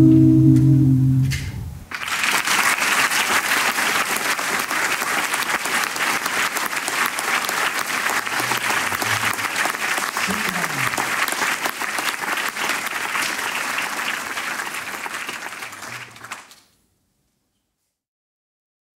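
The last held chord of a cappella voices dies away in the first second and a half, then audience applause breaks out at about two seconds and carries on steadily, fading and stopping about a second and a half before the end.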